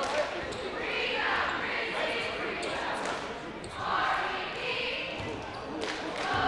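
A basketball bouncing on a hardwood gym floor, with voices of the crowd and players echoing in the gym; one loud knock near the end.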